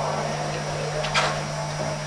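Steady electrical hum in a lecture room's audio pickup, with one brief soft noise about a second in.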